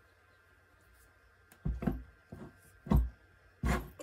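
A few short, dull clunks about half a second apart from a new ring stretcher/reducer as its lever handle is pumped. They start about a second and a half in, and the loudest comes near three seconds. The new mechanism is a bit stiff.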